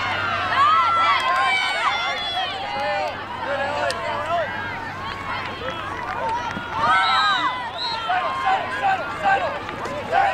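Lacrosse players and sideline spectators shouting and calling out, many voices overlapping with no clear words.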